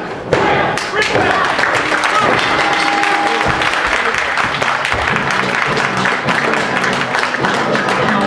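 A body thudding onto the wrestling ring mat, then steady crowd noise, with voices and clapping in the hall and music underneath.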